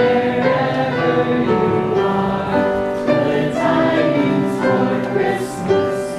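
Audience singing together as a group to piano accompaniment, with the voices loudest and the piano beneath them.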